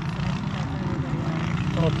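Small cyclekart engines running, a steady wavering drone.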